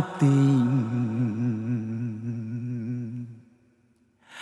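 A male singer holds a long low sung note with vibrato, closing a phrase of a Vietnamese lyrical ballad; the note fades out about three and a half seconds in.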